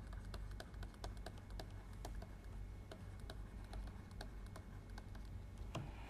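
Pen stylus tapping and scratching on a writing tablet as words are handwritten: faint, irregular clicks, a few a second.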